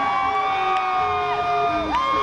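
Live electric guitar holding long, sustained notes that bend in pitch, with a second note sliding down near the end, over a row of short repeated notes. A crowd cheers underneath.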